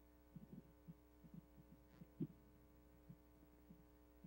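Near silence: a steady low electrical hum on the audio line, with a few faint short low blips, the clearest a little past the middle.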